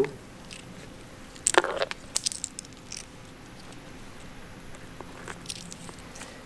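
Expanded clay pebbles placed into a plastic net cup: a sharp click about one and a half seconds in, then a few lighter, scattered clicks.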